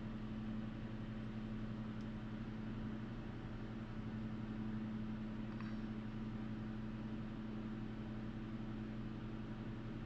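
Space heater running through its heating cycle: a steady, even low hum.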